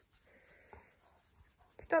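Faint, soft rustle of a hand stroking a malamute's thick fur, with little else heard.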